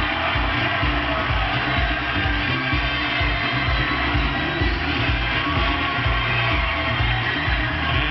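Upbeat game-show theme music with a steady, driving beat, over a studio audience cheering.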